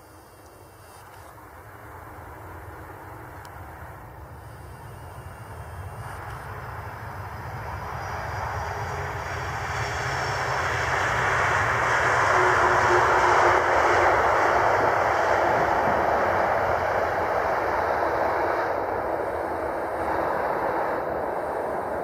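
Jet engines of a Boeing 747-400 airliner on its landing rollout. The noise grows steadily louder for about twelve seconds to a peak as the aircraft passes, with a faint whine above it, then slowly fades as it moves away.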